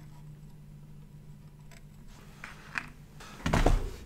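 Quiet workbench room with a steady low hum and a few faint small ticks during desoldering with copper braid, then a loud, dull thump on the wooden bench near the end.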